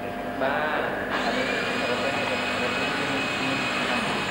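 A workshop power tool starts running about a second in and keeps going steadily with a high, even whine. A brief voice is heard just before it.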